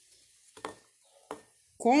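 Two short clicks about two-thirds of a second apart, a paintbrush knocking against a ceramic saucer of paint as it picks up paint; a woman starts speaking near the end.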